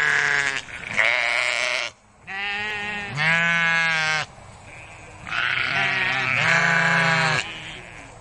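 Sheep bleating: about six drawn-out calls, each up to about a second long, following one another with short gaps and a brief lull around the middle.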